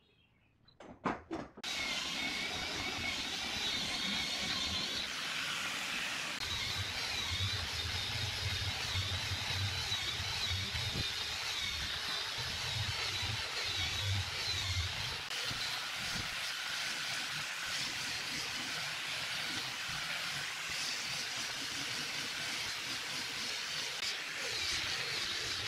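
A few knocks, then an electric angle grinder with a sanding disc starts about two seconds in and runs steadily with a high whine, sanding the curved edge of a wooden board. It bears down harder on the wood for several seconds around the middle.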